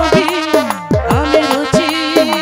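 Instrumental folk music from a jatra band: a hand drum plays bass strokes that glide down in pitch, several times a second, under a wavering melody line.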